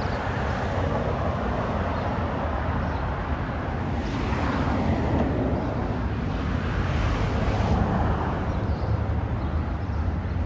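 Street traffic: a steady low rumble of road noise with cars passing, two of them swelling up and fading away about four and seven seconds in.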